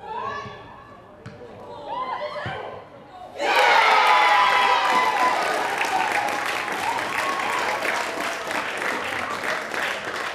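Scattered shouts from players on the pitch, then about three and a half seconds in a sudden loud burst of cheering, high-pitched shouting and clapping from the crowd as a goal goes in.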